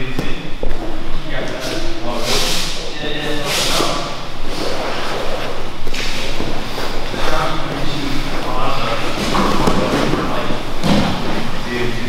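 Brazilian jiu-jitsu grappling on padded mats: thuds of bodies shifting and landing on the mat and rustling of heavy gi cloth, with voices talking throughout in a large echoing hall.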